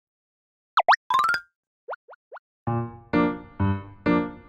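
Cartoon sound effects of an intro jingle: two quick swooping boings, a fast rising run of chime notes, then three short rising plops. Light music with notes about every half second starts about two and a half seconds in.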